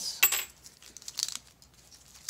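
Light metallic clinking and rattling of small metal objects: a ringing clink right at the start, a softer one about a second in, and a few small ticks between.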